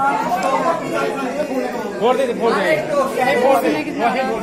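Several people talking over one another: indistinct chatter of voices.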